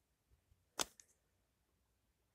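Near silence, broken by one short, sharp click a little under a second in and a fainter tick just after it.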